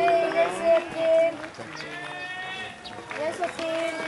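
People's voices shouting around a baseball field after a hit, with several long, drawn-out calls overlapping.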